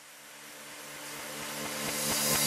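An edited-in riser sound effect: a rushing noise that swells steadily louder from near silence, with low steady tones coming in underneath, building up into an electronic dance track.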